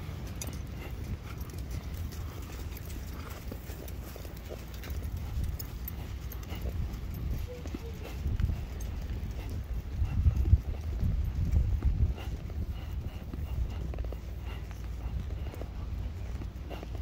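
Horses walking in single file on soft sand: muffled hoofbeats under a steady low rumble that swells about ten to twelve seconds in.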